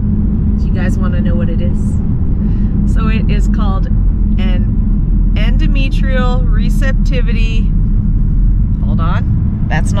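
Steady low road and engine rumble inside the cabin of a moving car, under a woman talking.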